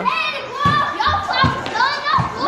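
Children talking and shouting over one another while playing.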